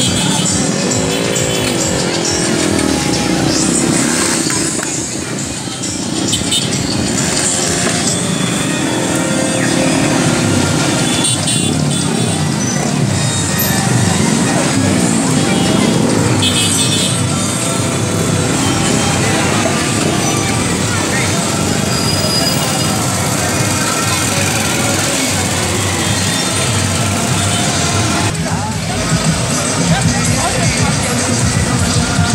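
Many motorcycle and car engines running at low speed in a slow-moving procession, mixed with music and voices throughout.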